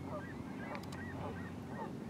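A flock of birds calling, many short overlapping calls following one another quickly, over a steady low hum.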